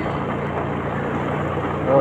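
Motorcycle engine running steadily at low riding speed, a low even hum heard from the rider's seat.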